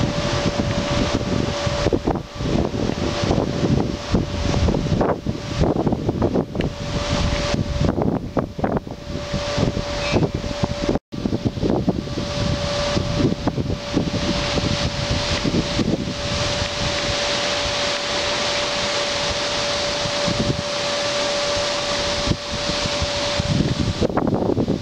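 Strong gusty wind buffeting the microphone, with leaves rustling in the trees. The buffeting comes in heavy gusts in the first half and settles into a steadier rushing later. A steady humming tone runs underneath throughout.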